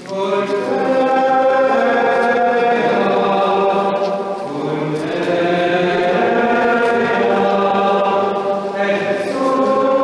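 A group of voices singing a slow, chant-like hymn in a stone church, with long held notes. The singing swells up right at the start and dips briefly about halfway through.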